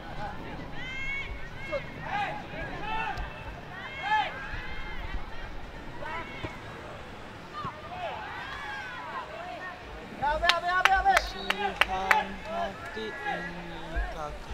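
Players and onlookers shouting and calling across an outdoor football pitch, distant and overlapping. About ten seconds in comes a louder burst of closer shouting with a few sharp clicks.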